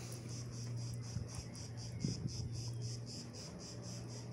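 Insects singing in a fast, even, high-pitched pulse, about six or seven pulses a second, over a steady low hum, with a couple of soft knocks about one and two seconds in.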